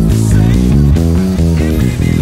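Electric bass played fingerstyle, a steady run of plucked low notes, over the recorded band track of a pop song.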